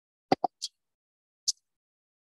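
A few short, sharp clicks in near silence: two close together about a third of a second in, a thinner, hissy tick just after them, and one more just past the middle.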